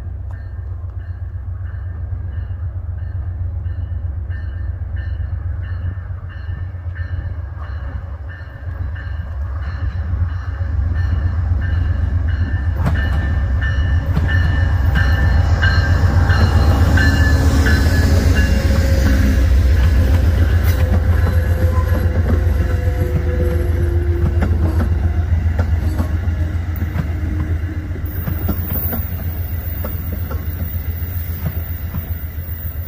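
Amtrak passenger train approaching and passing close by: a locomotive bell ringing about twice a second at first, then the GE Genesis diesel locomotive's engine and the rumble and clatter of the locomotive and coaches rolling past, loudest around the middle and easing off as the coaches go by.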